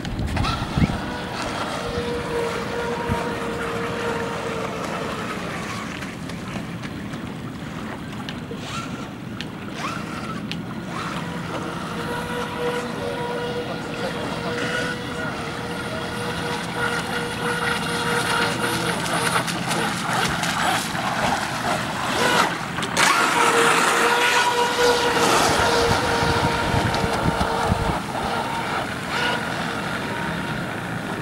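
Brushless electric motor of a 4S-powered RC speedboat whining at high speed as it runs across the water. The whine swells and fades three times as the boat passes.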